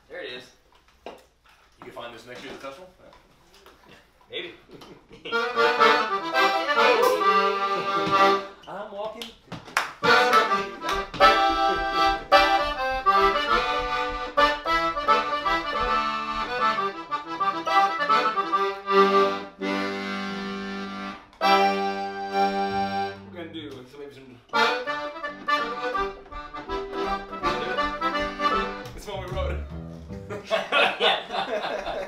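Cajun button accordion playing a tune that starts about five seconds in, with a short break a little before the end.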